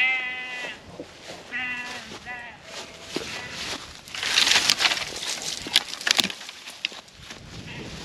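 Sheep bleating: one loud call at the start, then two shorter calls within the next few seconds. Then, from about four seconds in, dry grass and dead twigs rustle and crackle with several sharp snaps as a hand grabs at them.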